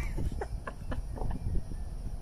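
Wind rumbling on the microphone, with a few light clicks and knocks through it.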